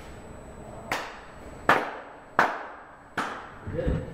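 Four slow, sharp hand claps about three quarters of a second apart, each with a short ringing tail, then a brief voice near the end.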